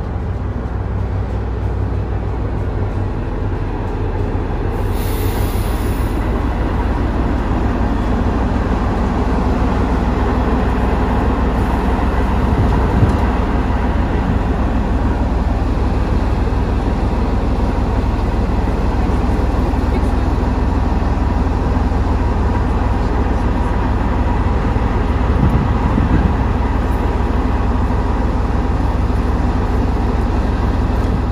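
DR1A diesel-hydraulic railcar pulling into the platform and standing at it, its diesel engines running with a steady low rumble. There is a brief hiss about five seconds in.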